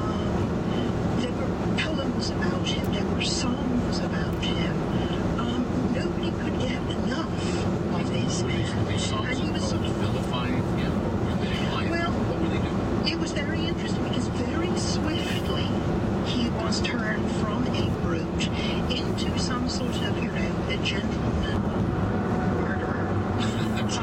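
Steady road and tyre noise inside the cabin of a 2011 VW Tiguan SEL on 18-inch wheels with 50-series tyres, cruising at highway speed. Faint talk runs underneath.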